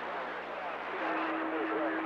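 CB radio receiver static on channel 28 with a weak, distant station's voice faintly coming through the noise. A steady tone joins the static about a second in.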